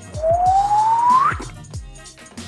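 Water pouring into a plastic water bottle: a stream of running water under a pitch that rises steadily as the bottle fills, then climbs sharply and stops as it reaches the top, about a second and a half in. Background music with a steady beat plays underneath.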